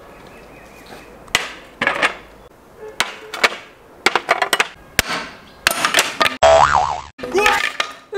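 Edited-in comedic sound effects: a run of sharp clicks and short pitched blips, then a loud wobbling boing about six and a half seconds in.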